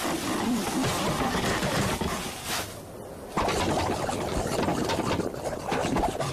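Gusting windstorm sound effect: loud rushing wind that dips briefly about halfway through.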